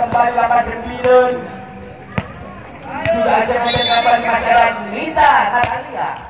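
A man talking over the game, with one sharp smack of the volleyball about two seconds in.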